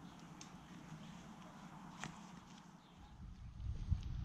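Faint, quiet outdoor background with a single light click about two seconds in, as a lid is set on a camping stove's cook pot, and a low rumble building near the end.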